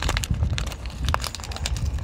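Small metal clicks and light rattling of a pop rivet being handled and offered up to a freshly drilled hole, over a steady low rumble of wind on the microphone.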